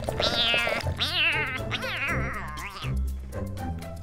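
Cat meowing, a quick run of about four high, falling, wavering meows that stops about three seconds in, over background music with a steady low beat.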